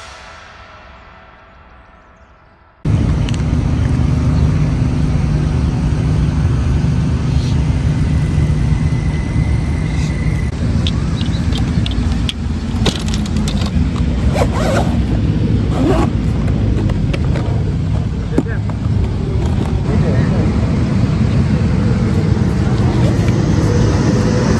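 The tail of the intro music dies away, then about three seconds in a steady outdoor background noise with a heavy low rumble cuts in, with a few scattered sharp clicks and knocks partway through.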